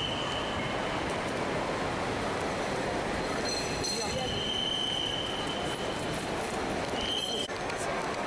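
Busy outdoor crowd and traffic noise with indistinct voices, steady throughout. A thin high squeal comes in about four seconds in for under two seconds, and again briefly near the end.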